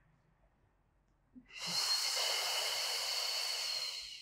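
A long, steady breath blown out through the mouth, starting about a second and a half in and lasting about three seconds. It is a deliberate Pilates exhale, made while drawing the abdominal muscles in.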